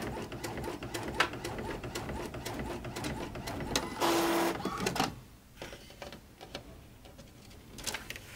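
Epson EcoTank ET-7700 inkjet printer printing a sheet of card stock: mechanical whirring and clicking of the print head and paper feed, with a louder whir about four seconds in. It then falls quieter, with only occasional clicks.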